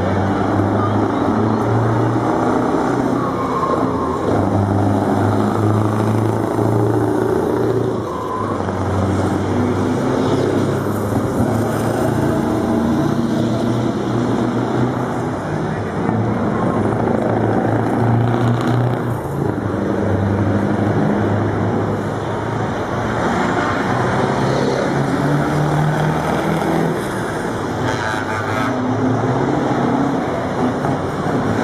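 Scania V8 truck engines passing one after another, among them a 164 with its 16-litre V8 and a 143H 450 with its 14-litre V8, with a deep exhaust note. The engine note climbs and drops several times as the trucks pull through the gears.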